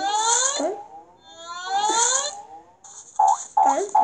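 Cartoon sound effects from an animated children's story app: two long rising pitch glides, then, about three seconds in, a quick run of short bouncy blips, about three a second.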